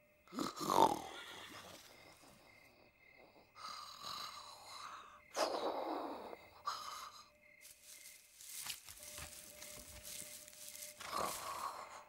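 Cartoon horses snoring as they sleep in their stalls: a series of separate breathy snores, each lasting up to about a second.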